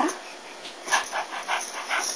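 A baby's short, breathy vocal bursts, about four a second, starting about a second in, after a "da" syllable at the very start.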